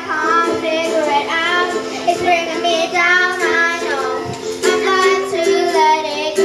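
Two young girls singing a song together into a microphone over a steady, held instrumental accompaniment.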